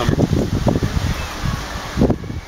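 Wind gusting over the microphone, an irregular low rumble and buffeting that runs throughout.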